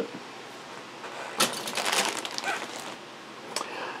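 Plastic model-kit runners being handled, with a short crackling rustle of plastic about a second and a half in, then a few faint clicks.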